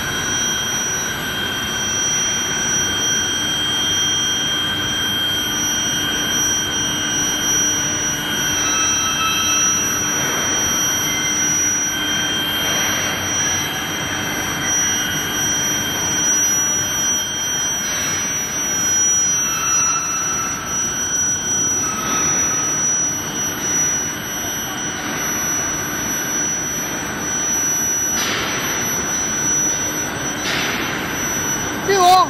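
A steel-bar induction hardening and tempering line running: a steady, high-pitched whine of several held tones from the induction heating equipment over the hum and rumble of the roller-drive motors.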